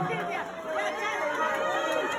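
A crowd of guests chattering and calling out over one another, with one voice holding a long call that slides slowly down in pitch.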